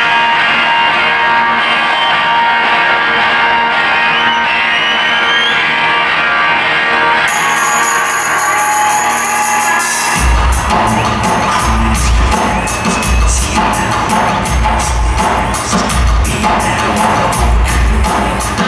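A trip-hop band plays live in an arena, recorded from the audience. Sustained synth and guitar tones with no bass run for about ten seconds, then a heavy bass and drum beat comes in and keeps a steady rhythm.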